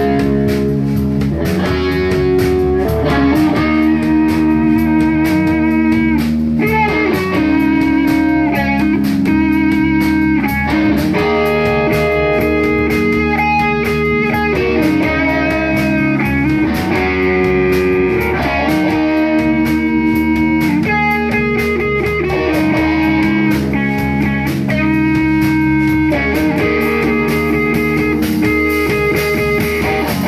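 Live rock band playing loud and steady: two distorted electric guitars playing chords and riffs over bass guitar and drums, with no singing.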